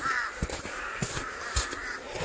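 A bird calling: one arched call right at the start and a fainter one near the end. Soft footsteps on snow sound about twice a second underneath.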